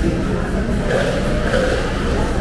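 Steady low rumble of restaurant room noise, with faint indistinct voices in the background.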